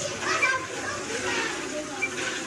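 Background chatter of children's voices, indistinct and overlapping.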